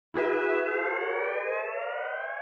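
A single sustained, siren-like tone rich in overtones, starting a moment in and slowly rising in pitch.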